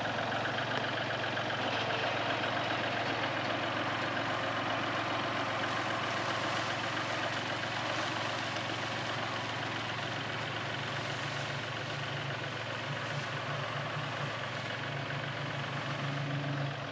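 Compact tractor's engine running steadily at a low, even speed as it drives along with a loaded front-loader bucket and tips it to spread wood chips. The hum deepens slightly near the end.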